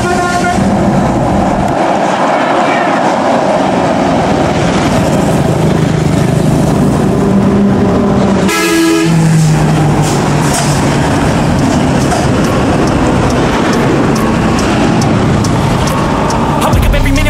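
Heavy highway traffic: buses and trucks driving past, a steady run of engine and tyre noise. A vehicle horn blasts once, briefly, about halfway through.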